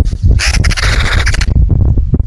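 Crows and magpies calling around a carcass: harsh cawing, with a rapid rattling chatter from about half a second in that lasts about a second, over a steady low rumble.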